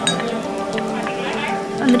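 A metal spoon clinking a few times against a stainless steel bowl while stirring rice, over background music with steady held tones; a singing voice comes in near the end.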